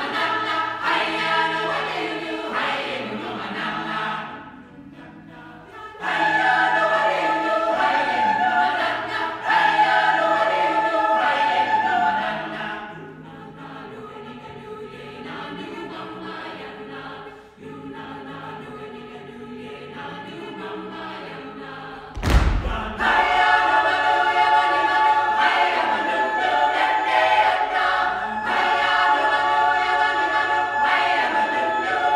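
Mixed SATB choir singing a cappella in a church, moving between loud, full passages and softer, thinner ones. A single sharp thump sounds about three-quarters of the way through, just before the full choir comes back in loudly.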